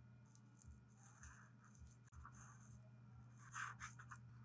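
Faint scratching of a paint marker's tip drawing strokes on a paper sticker, a little louder near the end, over a low steady hum.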